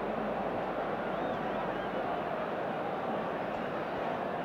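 Large football stadium crowd of tens of thousands, a steady noise of many voices with no single sound standing out.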